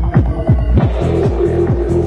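Psytrance dance music: a fast, driving run of falling-pitch kick and bass hits under a steady held synth tone.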